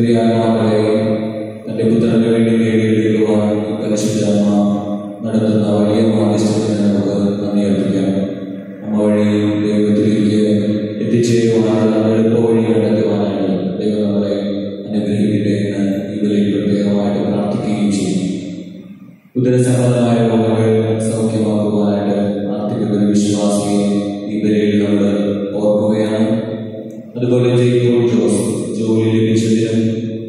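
A man chanting a liturgical prayer into a microphone, in long held phrases with a brief pause about two-thirds of the way through.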